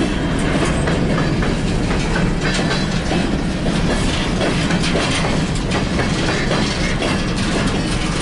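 Empty coal hopper cars of a freight train rolling past, with a steady rumble and a continuous run of wheel clacks over the rail joints.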